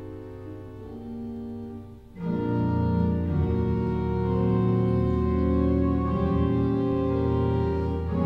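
Pipe organ played with held chords: a softer passage, a brief break about two seconds in, then a louder, fuller entry with deeper bass notes that sustains through the rest.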